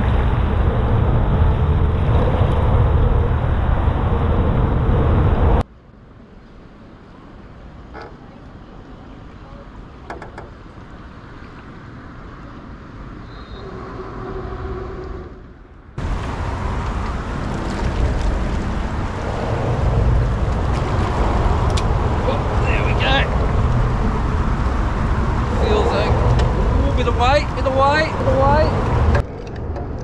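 Steady wind rumble and rushing water on the microphone of a small boat, with a sudden drop to a much quieter hush about five seconds in that lasts some ten seconds before the noise returns. A few short wavering squeaks come near the end.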